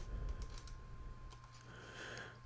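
Faint clicks from a computer mouse and keyboard at a desk, with a low rumble of the microphone being bumped in the first second, over a faint steady electrical hum.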